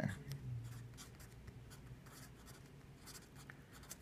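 Felt-tip marker writing on paper: a run of faint, short scratching strokes as two words are written out, with a pause in between.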